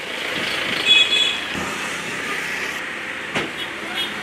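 Road traffic noise: a steady rushing sound of a vehicle going by, with a single sharp click about three and a half seconds in.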